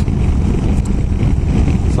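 Wind buffeting the microphone at steady road speed, over the running engine and road noise of a BMW F800GS motorcycle.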